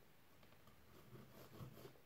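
Near silence, with faint scratching of a pencil drawing a line on cardboard along a steel ruler, starting about a second in.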